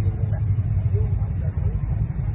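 Steady low engine rumble, like an idling engine, with faint voices in the background.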